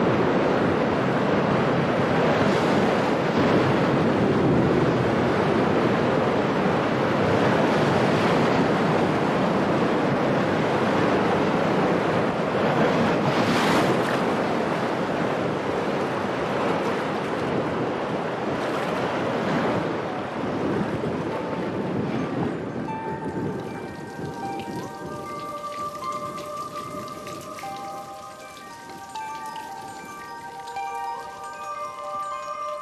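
A storm's wind and driving rain over rough water, a dense steady rush that fades over the last third. Near the end, soft tinkling notes of mallet-percussion music, like a glockenspiel, come in.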